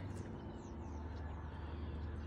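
Quiet outdoor background: a steady low hum with a few faint, high, falling bird chirps in the first second.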